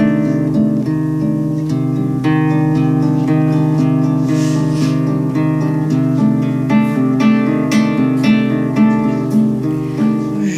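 Solo acoustic guitar playing a repeating picked pattern of notes at a steady pulse.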